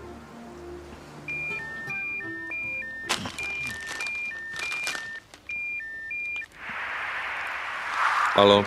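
Mobile phone ringing with an electronic two-tone ringtone: high and low beeps alternate, about three beeps a second, with a couple of knocks as a hand fumbles for the phone. The ringing stops near the end and a rustling follows.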